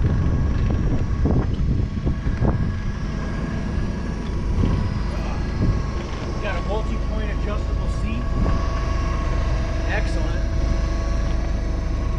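Doosan GC25P-5 propane (LP) forklift engine running steadily as the truck is driven and brought to a stop, a low engine note with a steady whine above it.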